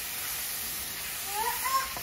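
Onion, carrots and celery sizzling in hot oil in an enamelled cast-iron Dutch oven as they are stirred with a wooden spoon: a steady hiss. A brief rising voice sound comes near the end.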